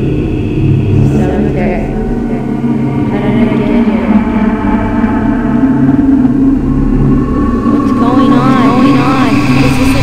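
Experimental film soundtrack: a steady low drone runs under garbled, voice-like sounds with no clear words. Wavering, arching pitched sweeps come in about eight seconds in.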